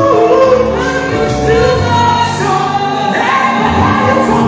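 Live gospel music: a small group of singers singing together in harmony, with a band playing underneath.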